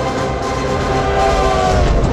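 Steam locomotive coming head-on, its whistle held over dramatic trailer music and a heavy low rumble; the whistle's tones sag slightly in pitch near the end.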